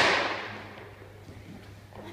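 A single loud bang right at the start, echoing around a large hall and fading away within about a second.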